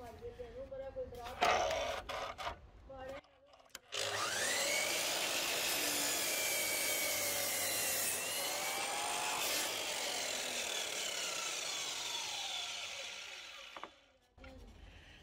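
Dewalt DWS780 mitre saw switched on about four seconds in, getting up to speed and cutting through a tanalised softwood post, then running down and stopping just before the end. Light knocks and handling clicks come before it starts.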